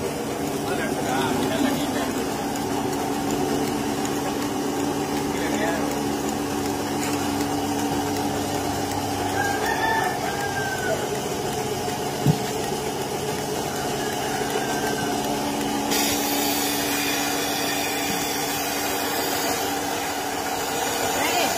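Portable milking machine's vacuum pump running with a steady hum while the teat cups are being put on a cow. A hiss joins it about three-quarters of the way through.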